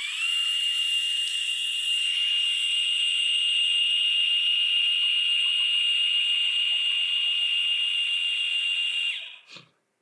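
Moza Slypod E motorized slider's motor driving its telescoping barrel out: a loud, high, drill-like whine that reaches full pitch right at the start, holds one steady tone for about nine seconds, then cuts off near the end. The drive is loud and gets louder the faster the barrel travels.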